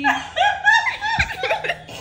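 A woman laughing out loud.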